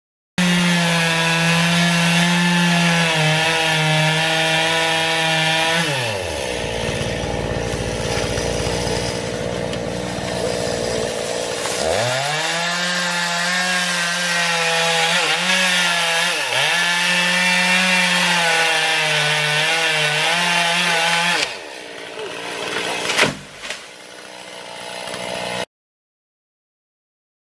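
Petrol chainsaw cutting into a gum tree trunk at high revs. Its engine note sinks away for several seconds, then climbs back to full revs with a couple of brief dips. It then stops, leaving quieter outdoor sound with one sharp knock near the end.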